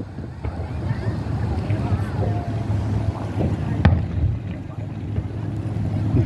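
Wind rumbling on the microphone at an outdoor fireworks display, with one sharp firework bang about four seconds in.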